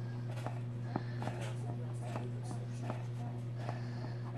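Felt-tip marker scratching and tapping on a cotton t-shirt in short strokes, heard as faint scattered ticks over a steady low electrical hum.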